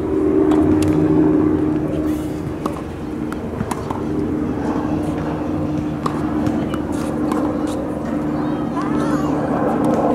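Tennis ball being served and rallied: a series of short, sharp pops as rackets strike the ball and it bounces on the hard court. Under them runs a steady low drone, like an engine running nearby.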